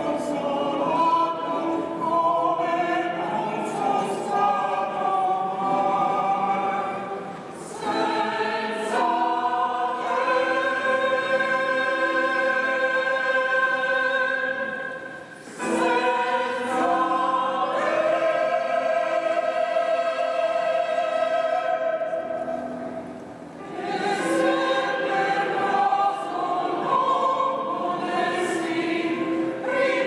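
Mixed choir of men's and women's voices singing under a conductor, in long held phrases with brief breaks between them.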